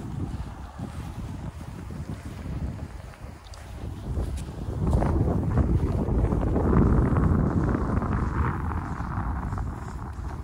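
Wind buffeting the microphone with a low rumble that grows louder about halfway through, over uneven crunching footsteps in fresh snow.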